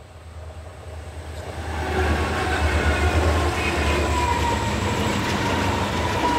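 Passenger train rolling past, its rumble of wheels on rail building over the first two seconds and then holding steady. A thin high whine from the running gear comes in during the second half.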